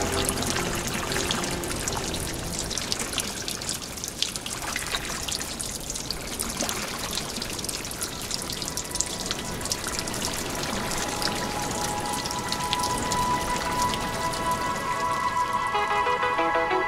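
Water poured from a pot and splashing down in a dense patter of droplets, under soft music that grows louder in the second half.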